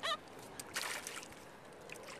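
A short wavering honk-like call right at the start, then a brief splash about a second in as a hooked largemouth bass thrashes at the surface beside the boat, over faint background hiss.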